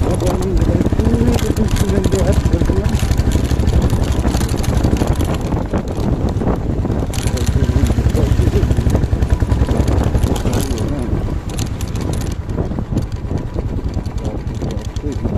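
Single-cylinder motorcycle engine running steadily as the bike rides along, easing off slightly near the end. A voice is heard faintly at times over the engine.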